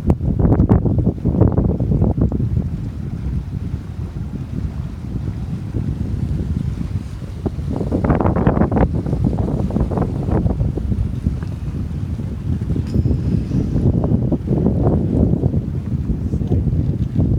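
Wind buffeting the microphone: a loud, gusty low rumble, with stronger blasts about a second in, around eight seconds in and near the end.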